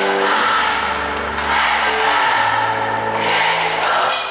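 Live pop-rock band music recorded from the audience: sustained low bass notes under a dense wash of noise, with no singing.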